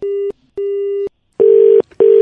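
Telephone busy tone after the call is cut off: a steady low beep in short repeated pulses, the later pulses louder and harsher.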